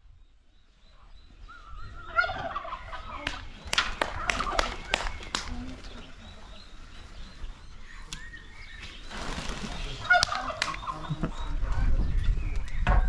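Male turkey gobbling in rattling bursts, first about two seconds in and again about ten seconds in.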